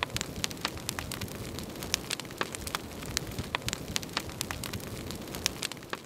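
Large bonfire of brush, pine needles and stacked tree logs burning as it takes hold, with dense crackling and popping over a steady low rush.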